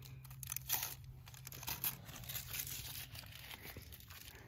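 Adhesive bandage wrapper being torn open and its paper backing crinkled, a quiet run of irregular rips and rustles.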